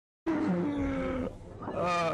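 A man's drawn-out, wordless groan, held for about a second, followed by a second, shorter vocal sound near the end as he lifts his head from the table.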